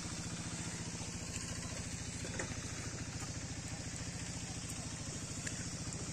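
A small engine running steadily at an even speed, with a rapid regular pulse.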